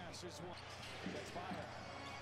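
Faint arena sound from a basketball game: a basketball bouncing on the hardwood court, with faint voices in the background.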